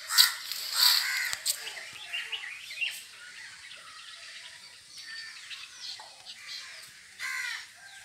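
Birds calling outdoors: a few loud, harsh crow-like caws, two in the first second and another near the end, with smaller chirps in between.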